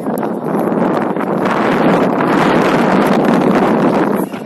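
Wind buffeting the camera microphone: a loud, steady rushing noise that grows heavier about a second and a half in.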